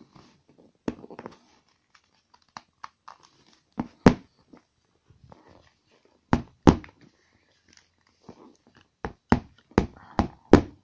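Plastic Amazon Fire TV Stick remote jabbed end-first down onto a padded leather stool, a series of dull knocks, often two in quick succession, with hand-rubbing on the plastic between them. The jabbing is meant to force open a gap at the sliding battery cover.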